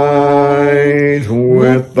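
A man's solo voice singing a slow hymn, holding one long note that breaks off about a second and a half in, then starting the next line near the end.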